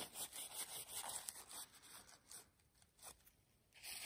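Paper towel being rubbed over the steel blade and liner of a Spyderco Paramilitary 2 folding knife to clean off grime: faint rubbing and scuffing that dies away after about two seconds.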